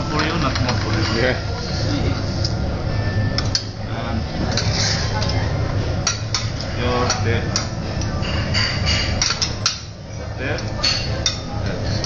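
Metal utensils and dishes clinking and knocking in sharp, irregular strikes, over a steady hum and background chatter.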